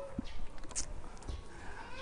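A short pause in a man's speech: faint room noise with a few small clicks and a brief rustle.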